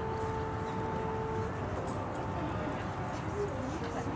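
Hoofbeats of a horse trotting on soft sand arena footing, over a steady outdoor background noise. Faint long held tones sound in the background throughout.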